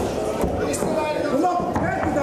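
Kicks and gloved punches landing on a fighter in a kickboxing bout: a few sharp slaps, the strongest about half a second in, over continuous spectator shouting and chatter.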